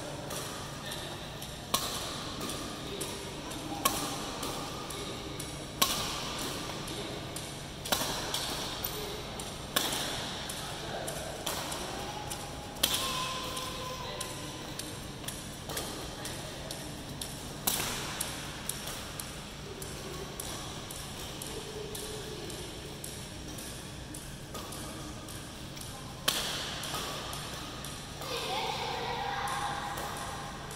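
Badminton rackets striking shuttlecocks in a feeding drill: sharp single hits about every two seconds at first, then more spread out.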